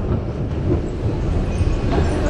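Steady low mechanical rumble in a railway station, from the running escalator or a train on the tracks nearby.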